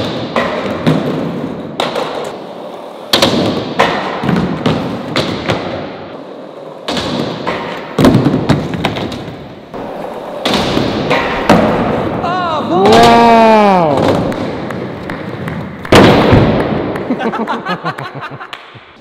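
Skateboard wheels rolling and scraping on a concrete skatepark floor and ledge, broken by repeated sharp clacks and thuds of the board hitting the ground. A heavy thud comes near the end as the board and rider hit the floor in a fall. About two thirds through, a long drawn-out vocal 'ohh' rises and falls in pitch.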